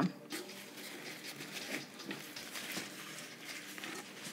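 Faint, irregular rustling and scraping of paper towel, wrapped on an old outer cable, as it is pushed and pulled through the inside of a Fox 38 suspension fork's lower legs to clean them out.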